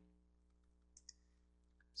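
Near silence with two faint computer-keyboard key clicks about a second in.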